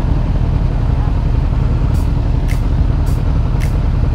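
Motorcycle engines idling at a standstill as a steady low rumble, the Suzuki GSX-R750's inline-four loudest. From about halfway through, a light ticking comes in at roughly two a second.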